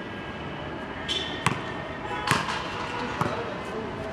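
A basketball bouncing on a hard court: three sharp bounces about a second apart.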